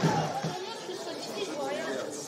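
Field-level sound of a football match: scattered voices calling and chattering on and around the pitch. Louder sound carried over from before, most likely the highlight reel's music, stops about half a second in.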